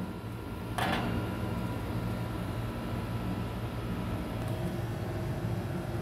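Electric oven's fan running with a steady low hum, and one short scraping noise about a second in.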